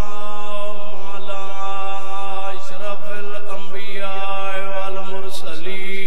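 A man's voice chanting a melodic recitation in long held notes that waver in pitch: a zakir's sung delivery during a majlis.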